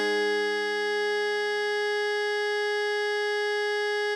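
A single long held alto saxophone note, written F5 (concert A-flat, about 415 Hz), steady and unbroken, with a lower tone underneath that fades away over the first three seconds.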